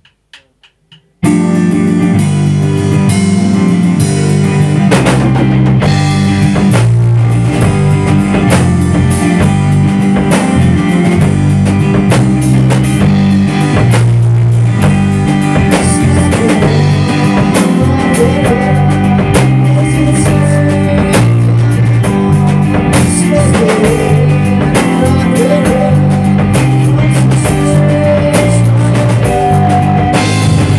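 A rock band playing loud in a rehearsal room: electric guitar and drum kit come in together suddenly about a second in and play a repeating riff.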